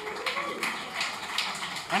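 A small audience clapping, with a voice calling out briefly near the start.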